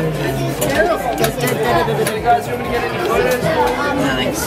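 People chatting around, several voices talking at once with no single clear speaker.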